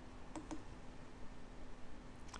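Two quick computer mouse clicks, a fraction of a second apart, about half a second in, over a faint steady hum.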